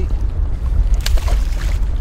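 Wind rumbling on the microphone over moving river water. About a second in there is a sudden splash as the released sheepshead drops back into the river, with a short wash of water after it.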